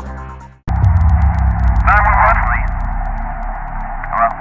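Electronic intro music fades out and stops within the first second. Then a phone-call recording starts abruptly: a steady low hum, with a brief thin voice through the telephone line about two seconds in.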